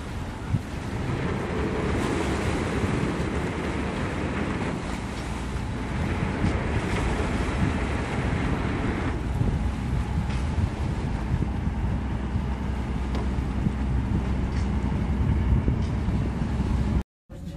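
Wind buffeting the microphone over the low, steady rumble of a boat's engine and water churning against the hull.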